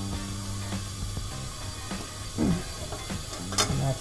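Lever-type valve spring compressor on a Ford 460 cylinder head clicking and rattling against the valve spring and retainer as it is worked and let off. There is one sharp metal click near the end, over a steady low hum.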